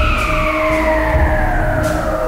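Electronic instrumental music: a synthesizer tone glides slowly downward in pitch over a steady held note and a low bass bed.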